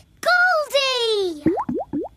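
A drawn-out cartoon voice with a long falling pitch, followed near the end by about four quick rising 'plop' sound effects from the cartoon goldfish in her bowl.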